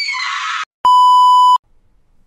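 A held high-pitched sound that drops slightly and cuts off, then after a short gap a loud, steady beep tone lasting under a second, the kind of bleep dubbed in to censor words.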